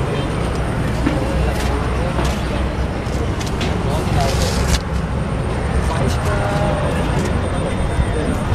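A steady low engine rumble, with people talking in the background.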